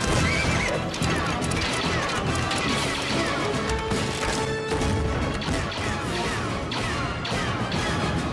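Horses whinnying and hooves clattering amid explosions, over dramatic action music; one whinny comes right at the start.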